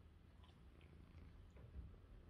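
A domestic cat purring faintly, a low steady rumble with a few soft ticks over it.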